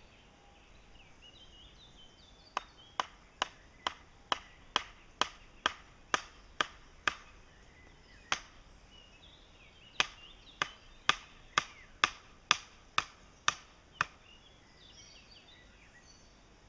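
Hammer striking the top of a wooden stake, driving it into an earth mound: a run of about eleven sharp knocks at roughly two a second, one lone knock, then a second run of about nine.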